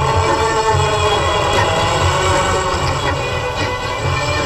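Orchestral film-song music from an early 1950s Hindi film soundtrack: held instrument tones over a steady, pulsing low beat.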